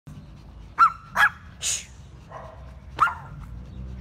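Small dogs barking: two quick, high-pitched yaps about a second in and a third near the end, with a short hiss between them.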